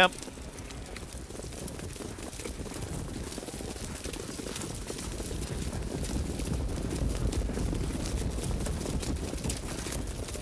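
Low, noisy rumble of a field of harness horses and sulkies coming up behind the mobile starting-gate truck on a wet track, slowly growing louder as they approach.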